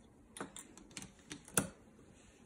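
Snap Circuits pieces being fitted and pressed onto the clear plastic base grid: about half a dozen light plastic clicks and taps, the loudest about a second and a half in.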